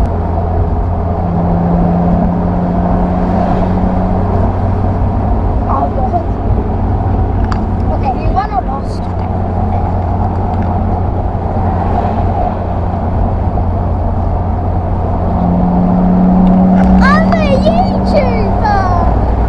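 BMW M Roadster's straight-six engine running at a steady cruise, with road and wind noise coming into the open cabin. The engine note strengthens twice, once early on for a couple of seconds and again from about three seconds before the end, when the sound is at its loudest.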